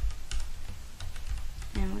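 Computer keyboard keystrokes and mouse clicks, a scattered handful of short clicks, as text is selected, copied and pasted.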